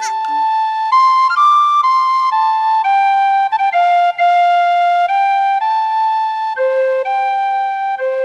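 A simple, slow melody played on a small flute, one clear held note at a time, stepping up and down in pitch about once a second. It is the tune that quiets the acorns.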